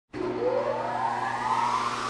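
Intro logo sound effect: a rising whoosh over a steady low hum, beginning just after the start.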